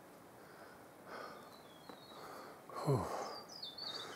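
A hiker's heavy breathing after a steep uphill climb: soft puffs of breath, then a falling "ooh" about three seconds in. A bird's thin whistled notes sound faintly near the end.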